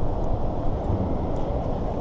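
Steady low rumble of road traffic on the freeway overhead.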